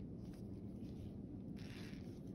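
Faint handling noise from gloved hands working a saline syringe on a port access needle while priming it, with a short scratchy rustle about one and a half seconds in.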